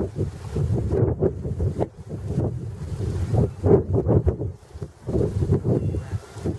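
Wind buffeting the camera's microphone in irregular gusts, a low rumbling rush that swells and dips.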